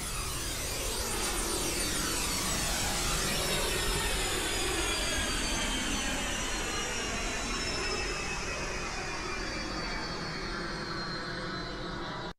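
Arturia Mini V3 software synthesizer (a Minimoog emulation) playing its "Airport Scene" preset: a synthesized jet-aircraft sound, a steady rushing noise with high whistling tones that slowly fall in pitch throughout, easing off slightly toward the end.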